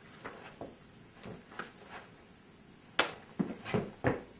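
Arms and sleeves brushing and light hand contacts during Wing Chun chi sao sticking-hands practice. About three seconds in comes a single sharp smack, then a few quick thuds as one partner steps in with a palm strike.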